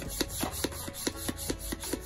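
Plastic hand pump worked in quick, even strokes, a rhythmic rasping rub several times a second as it pushes air into an inflatable plush ride-on toy.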